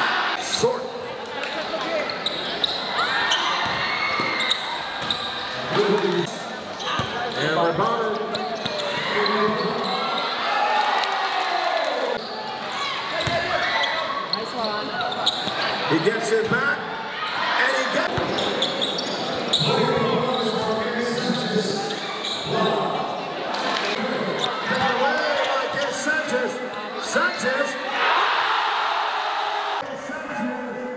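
Live game sound from a crowded gym: a basketball bouncing on the hardwood court among a steady hum of crowd and player voices, with sharp clicks and knocks scattered throughout.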